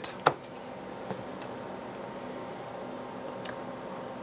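AC power regenerator humming steadily with a faint hiss while it works hard under injected white noise. One sharp click about a quarter second in.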